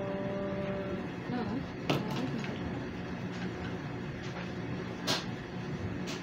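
Small plastic LOZ building-block pieces being handled and fitted together, with two sharp clicks, one about two seconds in and one near the end, over a steady low hum.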